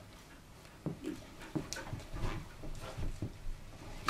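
Irregular soft footfalls of a greyhound and a person moving across a shag-carpeted floor, starting about a second in, with a few sharp clicks or taps among them and one stronger click at the very end.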